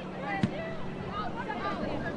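Shouted calls from players and onlookers on a soccer field, with one sharp thump about half a second in, likely the ball being kicked, over a steady low hum.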